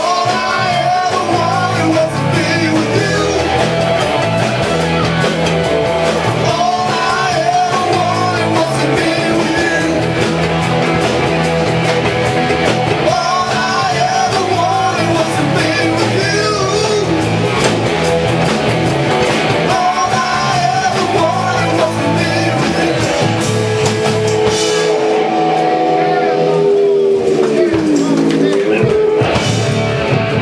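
Live rock band playing: electric guitar, bass, drum kit and a male lead vocal. About 25 seconds in the bass drops out and a held note slides down in pitch near the end.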